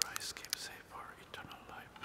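Quiet whispered speech.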